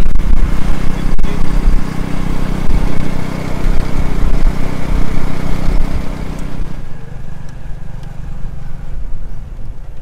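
Tuk-tuk's motorcycle engine running steadily under way, with a low rumble, heard from the passenger seat; it fades lower about seven seconds in.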